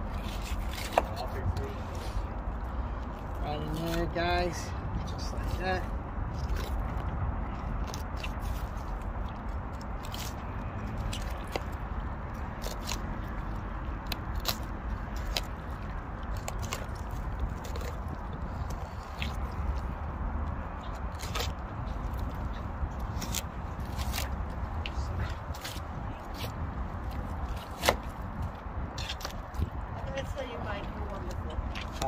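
Fillet knife working through a striped bass on a plastic cutting board: scattered small clicks and scrapes over a steady low background rumble.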